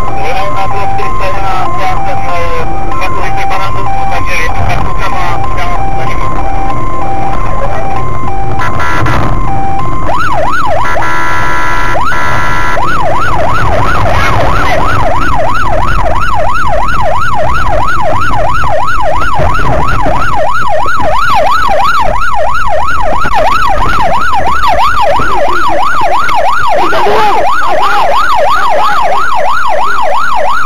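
Police siren, loud, first in a two-tone hi-lo pattern. About ten seconds in, after a short burst of a different tone, it switches to a fast rising-and-falling yelp, over steady road and engine noise.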